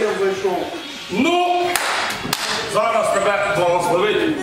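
Men talking, with a short noisy burst and two sharp smacks about two seconds in.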